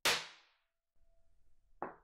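A metal spoon strikes a paper drawing on a tabletop once, with a sharp clang that rings away over about half a second, and a faint thin tone lingers. A second, shorter knock comes near the end.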